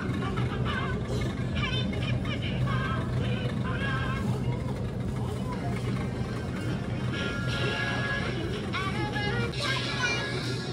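Grocery store ambience: background music and indistinct voices over a steady low hum.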